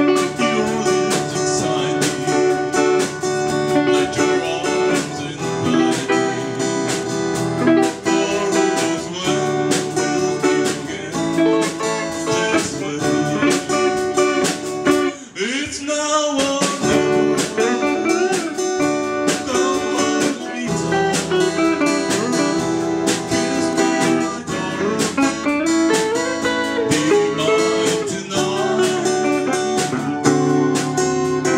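A live band plays: acoustic guitar strumming over a drum kit keeping a steady beat, with a short drop and a gliding note about halfway through.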